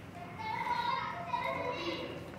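Children's voices in the background, faint and high-pitched, talking and calling.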